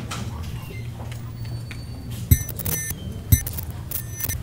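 Two sharp thumps about a second apart, each followed by a brief high ringing, over a steady low hum.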